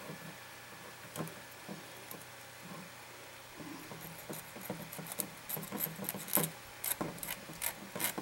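Small hand file scraping back and forth on the end of enamelled 15-gauge copper magnet wire, filing off the enamel to bare a spot for a resistance (ohms) reading. Faint short scratchy strokes, sparse at first and coming quicker in the second half.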